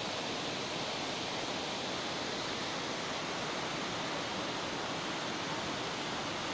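Steady rushing roar of river water flowing through a barrage's gates, even and unbroken throughout.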